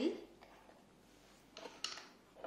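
Plastic screw cap being twisted off a small glass bottle and set down on a bench: mostly quiet handling, then a short rustle and a sharp click near the end.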